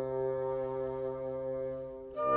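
Chamber ensemble of woodwinds and harp holding one sustained chord, growing slightly softer toward the end.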